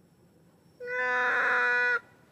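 Adult long-tailed macaque giving one steady, clear-pitched coo call lasting about a second, starting nearly a second in and cutting off abruptly.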